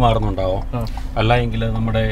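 A man talking inside a car cabin, over a low steady rumble.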